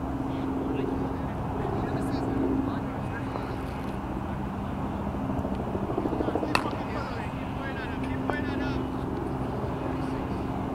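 A steady low drone of a distant engine runs under faint voices of players on the field. There is one sharp knock of the cricket ball being played about six and a half seconds in.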